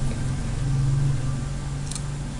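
Steady low hum with an even hiss: the background noise of the recording microphone, with no sound from the on-screen installation.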